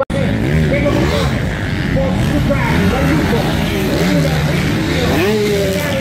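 Motocross bike engines revving on a sand track, their pitch rising and falling over and over as the riders open and close the throttle.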